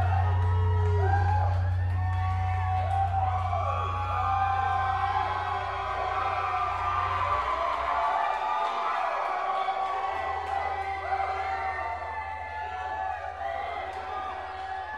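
A live rock band's last low note rings on from the amplifiers and cuts off about seven and a half seconds in, leaving a steady low amplifier hum. Over it the audience whoops and shouts.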